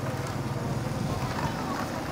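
Steady hubbub of a busy outdoor street-market crowd, with indistinct background voices and a low hum of general noise.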